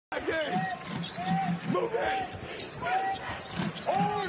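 A basketball dribbled on a hardwood court, with sneakers squeaking in short repeated chirps as players cut.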